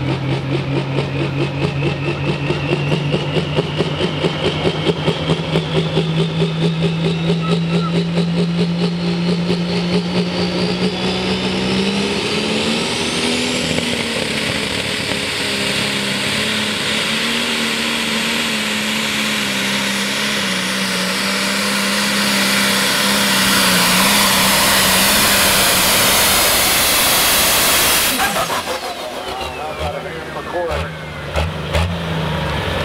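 Turbocharged Super/Pro Stock pulling tractor engine run up at the line, its pitch climbing slowly under a rising whine. About twelve seconds in it goes to full power down the track, the whine climbing higher. The engine is cut off sharply about two seconds before the end.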